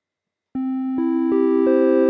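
Sonic Pi's triangle-wave synth (:tri), played live from a MIDI keyboard. About half a second in, four notes enter one after another, each higher than the last, and build into a held chord.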